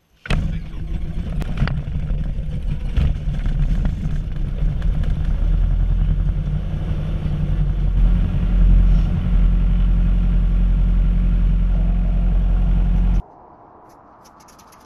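Small plane's piston engine heard inside the cabin, coming on suddenly and running steadily. It cuts off abruptly about a second before the end.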